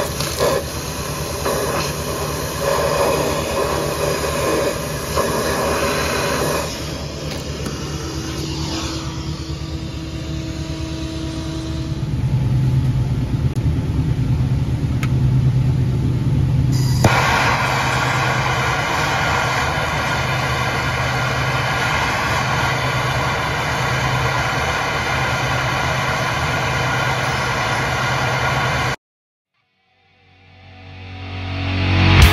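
The 1930 American LaFrance fire engine's T-head engine running steadily with a low hum. The sound shifts abruptly at a few edits and is strongest in the middle, then cuts off suddenly about a second before the end.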